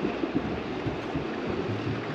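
Steady wind and water noise around a boat at anchor, an even hiss with no single sound standing out.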